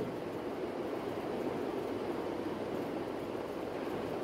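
Steady, even hiss of background noise with no other events.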